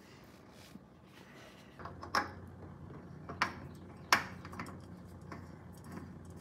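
Light clicks and knocks of a new oil filter being handled and bumped against the truck's underside as it is brought up to its mount, with three sharper clicks about two, three and a half and four seconds in, over a low steady hum.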